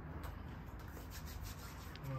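Faint rubbing as hand sanitizer is applied to hands from a trigger spray bottle, with a few short, soft strokes.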